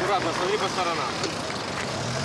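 Street ambience: a steady wash of road traffic noise with a low hum, and faint indistinct voices in the first second.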